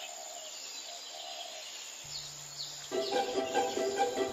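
Outdoor ambience with birds chirping, several short high chirps over a steady hiss. Background music comes back in about halfway, with a held low note and then string notes near the end.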